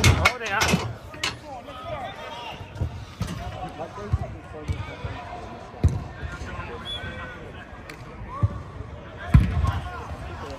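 A football being kicked and struck on an artificial pitch: dull thuds every second or two, the loudest clustered near the start and again near the end, with players calling out in the distance.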